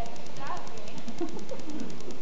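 Distant voices of actors speaking on stage, over steady hiss and a fast, even ticking buzz from the old videotape recording.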